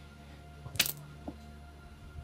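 Soft, steady background music drone, with one brief sharp noise a little under a second in.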